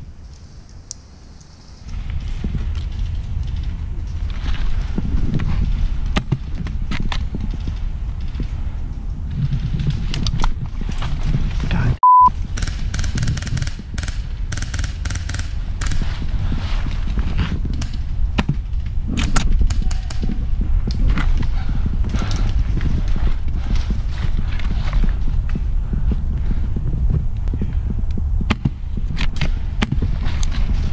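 Wind rumbling on the microphone, with rustling brush and scattered clicks of handling and movement. About twelve seconds in comes one short, high, steady censor beep.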